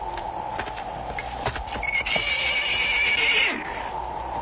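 A horse whinnies once, starting about two seconds in and lasting about a second and a half, over the clip-clop of hooves.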